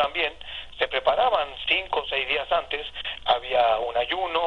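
A person talking without pause, the voice thin and narrow as if heard over a telephone line.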